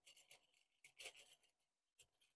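Near silence, with a few faint brief rustles of a hand rubbing over fabric, near the start and again about a second in.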